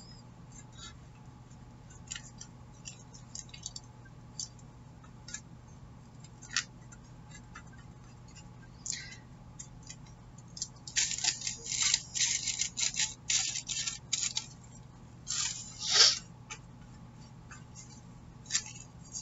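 Paintbrush scratching as homemade Mod Podge is brushed onto a glossy board: light scattered taps and clicks at first, then two stretches of quick, scratchy brush strokes in the second half.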